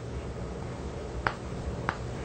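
Two short, sharp clicks in the second half, about half a second apart, over a low steady background hum.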